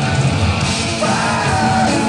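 Hard rock band playing live with drums, bass and guitars, heard through a roomy audience recording. A wavering lead melody rises over the band about a second in.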